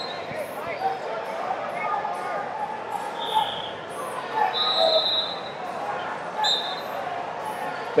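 Background chatter of spectators in a large hall, with a few short high-pitched tones about three, four and a half and six and a half seconds in.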